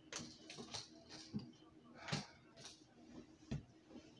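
Faint scattered clicks and light knocks, about seven in four seconds, from small hard objects being handled.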